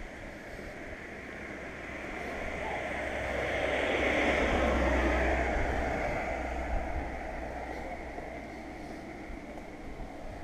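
A car passing by and driving away on the road: tyre and engine noise builds over a few seconds, is loudest a little before the middle, then fades.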